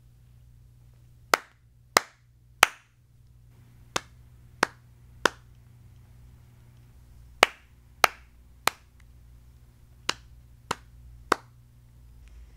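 Hand claps in four groups of three, evenly spaced about two-thirds of a second apart, keeping a steady beat. The groups alternate louder and softer as one person claps the pattern and another echoes it back.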